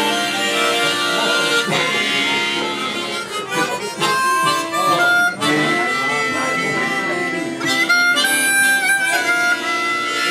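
Two harmonicas played together in an informal jam, held notes moving step by step through a melody over sustained chords.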